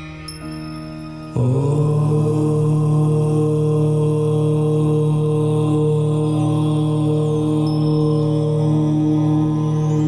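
A voice chanting "Om": one long, steady held tone that comes in suddenly about a second and a half in, over a soft sustained music drone.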